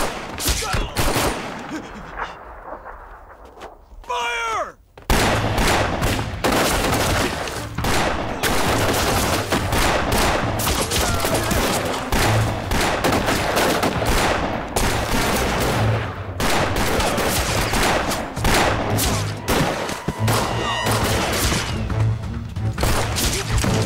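Movie gunfight sound effects: a few pistol shots, a short lull, a brief falling whine about four seconds in, then heavy, rapid gunfire from about five seconds on, shots crowding over a low rumble.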